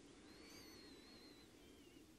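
Near silence: room tone with a very faint, high, wavering whistle lasting most of the pause.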